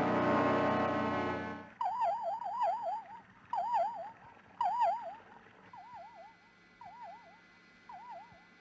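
A held music chord ends about 1.7 s in, followed by an electronic warbling signal tone: short bursts of quickly wobbling pitch, repeated several times and growing fainter. It is a 1960s sci-fi sound effect for an underwater detection signal picked up on headphones.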